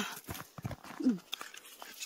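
Light clicks and taps of plastic dishes and containers being handled and passed around a camp table, with a short murmured voice sound about a second in.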